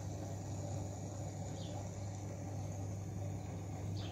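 Steady low hum of a running aquarium pump over a faint even hiss.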